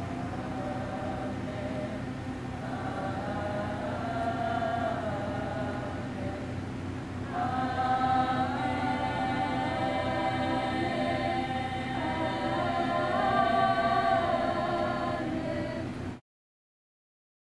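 A group of people singing together like a small choir, slow held notes, swelling louder and fuller about seven seconds in.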